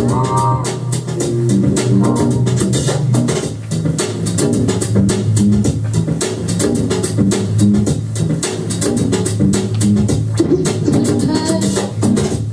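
A record played on a DJ's turntables through the mixer: music with a steady drum beat and a repeating bassline.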